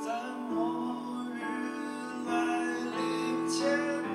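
A man singing with his own acoustic guitar accompaniment, the voice carrying the melody over sustained chords.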